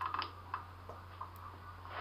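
Small metallic clicks from a Sturmey-Archer XRF8 8-speed hub's internals as it is shifted into a gear that locks a sun gear to the axle: a quick run of clicks at the start, then a few scattered light ticks, over a steady low hum.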